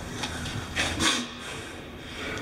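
Low, steady rumble of road traffic carried into a concrete pipe tunnel, with a brief rustle about a second in.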